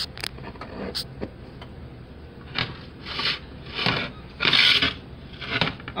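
Handling noise from a phone being turned and repositioned: a few clicks, then five short rubbing, scraping sounds, the longest about half a second.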